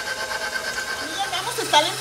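KitchenAid Professional 550 HD stand mixer running at low speed, its wire whisk beating a thin cake batter in the steel bowl: a steady motor whine.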